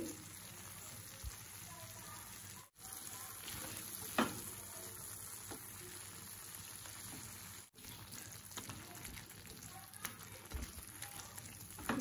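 A makhni gravy base of tomatoes, onion and cashews, cooked soft, sizzling gently in a frying pan as a silicone spatula stirs it, with a few soft taps of the spatula. The sizzle is steady but cuts out for an instant twice.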